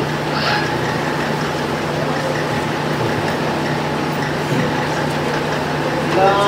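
Steady room noise with a constant low hum, with no voices: a pause between recited verses.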